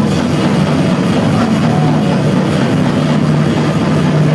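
Death metal band playing live: distorted guitars, bass and drums, loud and steady.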